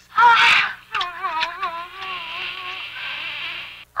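A short, loud burst, then a high, wavering wail like a woman's voice, drawn out for about three seconds and stopping just before the end.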